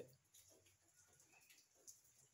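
Near silence: faint room tone with a few soft ticks.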